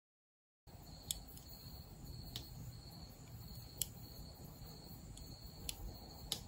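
Faint background hiss with a handful of short, high chirps spaced irregularly about a second apart, typical of an insect such as a cricket. It starts out of dead silence just under a second in.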